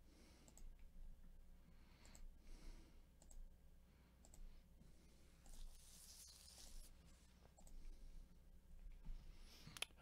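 Faint computer mouse clicks, one every second or so, over the low hum of a quiet room.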